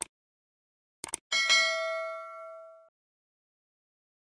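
Subscribe-button sound effect: a mouse click, a quick double click about a second in, then a bright bell ding that rings for about a second and a half and fades.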